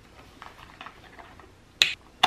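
Plastic screw cap on an Almond Breeze almond milk carton being twisted open: a few faint ticks, then one sharp click near the end.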